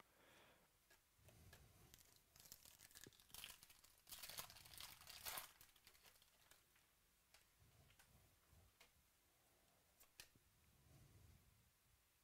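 Faint tearing and crinkling of a foil trading-card pack wrapper being ripped open, loudest about four to five seconds in, followed by soft sliding of cards and a few light clicks.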